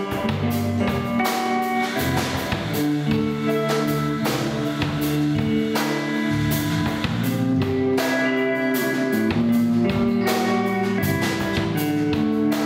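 Instrumental band playing live: guitars over bass and drum kit, with sustained melodic notes and steady drum hits.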